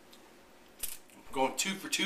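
A brief breathy noise about a second in, then a man's voice starting up.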